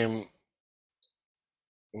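A man's voice trails off, then a pause holding a few faint short clicks about a second in, before his voice returns at the end.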